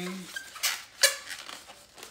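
Latex modelling balloon squeaking and rubbing under the hands as it is twisted into a wing, with two sharp squeaks close together, the second louder.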